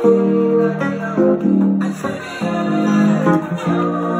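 Yamaha PSR-E473 electronic keyboard playing a gospel song in F major: held chords with a melody over them, new notes struck every half second or so.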